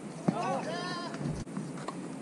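A tennis ball struck once by a racket, followed right after by a drawn-out shout of about a second whose pitch wavers up and down as the point ends.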